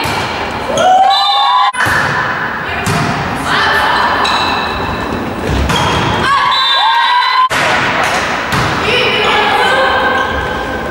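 Volleyball being struck again and again during a rally in a gym, sharp thuds of hands on the ball ringing in the hall, with players' voices calling out.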